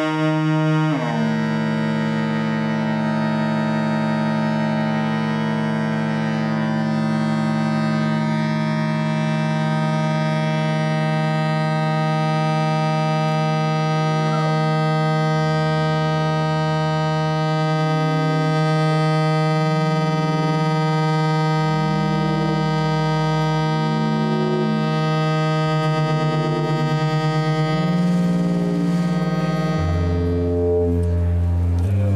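Keyboard and modular synthesizers playing a loud, sustained drone thick with overtones. About a second in its pitch slides down, and from about halfway low bass notes shift in and out underneath.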